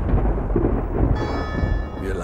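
A deep, loud rumble like thunder dies away after a booming hit. A ringing, bell-like tone with several high overtones comes in about a second in.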